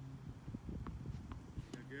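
Tennis ball knocks on a hard court: a couple of light taps, then a sharp racket-on-ball pop about a second and a half in. A low steady hum sits underneath.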